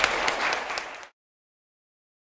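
Audience applauding, a dense patter of many hands clapping that cuts off abruptly about a second in, leaving dead silence.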